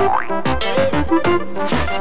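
Children's TV cartoon theme music with a quick beat of low notes about three a second under keyboard tones. It opens with a quick rising glide like a cartoon boing effect.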